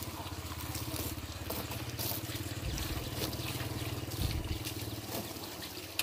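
Water from a hose pouring and splashing onto the glass panes of an aluminium-framed display cabinet, over a steady low motor hum.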